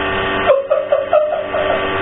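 A man laughing, a quick run of 'ha' pulses from about half a second in until near the end, over a steady electrical hum.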